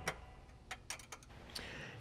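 A socket ratchet clicking in a handful of faint, irregular ticks as a seat-mount nut is tightened.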